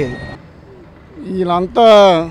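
Men speaking in a street interview: a voice trails off, a short pause with only faint street background, then another man's voice starts loud near the end.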